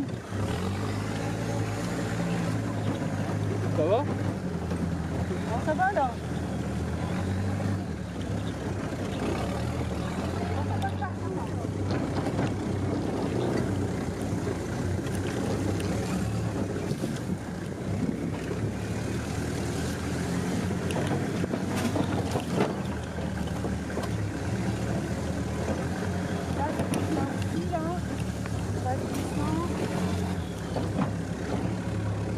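Military jeep's engine running steadily as it drives along a rough woodland track, heard from on board the open vehicle; the engine note shifts a few times as the driver changes speed.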